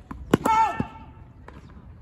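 A tennis racket strikes the ball with a sharp pop, followed at once by the player's short, pitched vocal grunt that dips at its end. A second knock follows about half a second later.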